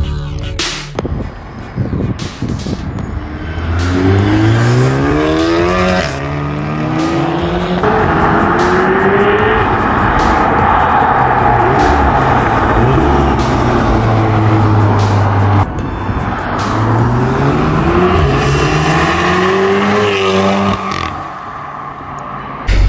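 Modified Volkswagen Golf R, a 530 hp turbocharged 2.0-litre four-cylinder breathing through a decat and a valved Milltek cat-back exhaust, accelerating hard. The engine note climbs and drops back again and again as it revs through the gears, with a steadier stretch in the middle.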